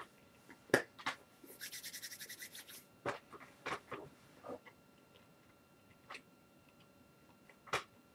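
A person chewing a mouthful of beef jerky, with scattered soft mouth clicks and smacks, and a quick run of short scratchy strokes about a second and a half in that lasts a little over a second.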